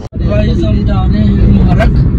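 Road and engine noise inside a moving car's cabin: a heavy, steady low rumble, with faint voices underneath. The sound cuts out for a moment right at the start.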